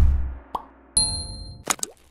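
Logo-animation sound effects: a deep low boom dying away over the first half second, a short blip, then a bright ding about a second in that rings briefly, followed by a few quick clicks near the end.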